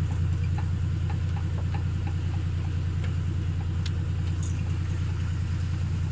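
Farm tractor's engine running steadily as it tows a wooden hay wagon, heard from the wagon as a loud, even low drone, with a few faint clicks over it.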